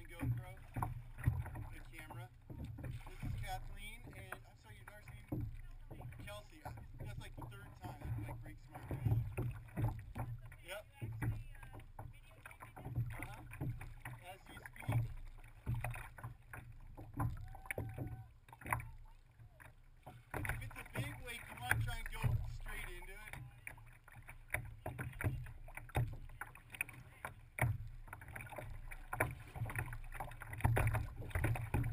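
Water slapping and sloshing against a plastic kayak hull as it is paddled, in irregular dull thumps and splashes. The sound is muffled by a GoPro's waterproof housing.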